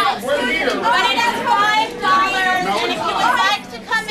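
Only speech: several people talking over one another in a heated argument.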